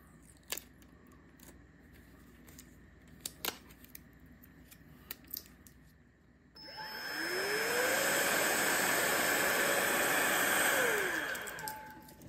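Roedix R7 cordless air duster: a few light plastic clicks as it is handled, then about six and a half seconds in its fan motor spins up with a rising whine and a rush of air. It runs steadily for about four seconds and winds down with a falling whine near the end.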